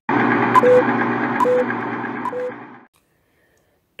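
A short electronic sound effect: a loud hiss with three short beeps just under a second apart, each a high blip dropping to a lower tone. It cuts off suddenly about three seconds in.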